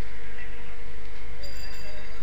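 Steady background noise of the recording: a low rumble and hiss with a faint constant hum.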